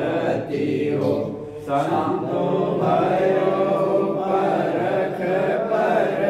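Devotional chanting of an aarti, voices held on long sustained notes, with a short dip about a second and a half in.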